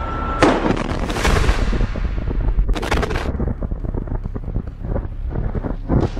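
A rocket-launcher warhead exploding against a Merkava tank, recorded on a field camera: a sudden loud blast about half a second in, followed by dense crackling and another sharp bang about three seconds in.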